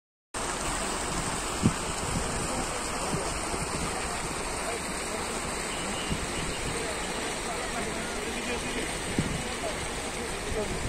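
Steady rush of water running over the rocks of a shallow man-made stream cascade, with the faint chatter of a crowd mixed in. A single short knock comes at about a second and a half.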